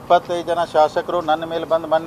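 A man speaking steadily to reporters.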